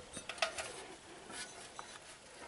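A few soft metallic clicks and clinks from a handmade sheet-metal turkey figurine with wire-and-bead trim being handled and turned in the hand.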